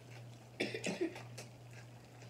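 A person coughs briefly, two or three quick bursts about half a second in.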